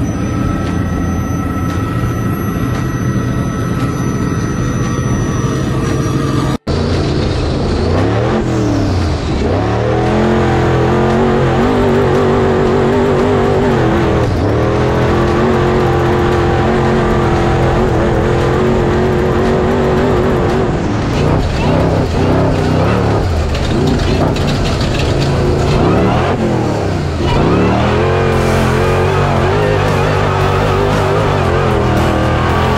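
Off-road Trophy Bug's engine heard from inside the cab while driving, its pitch repeatedly dropping and climbing again as the throttle is lifted and reapplied. Before a sudden cut about six seconds in, a different recording holds a steady, even sound with high thin tones.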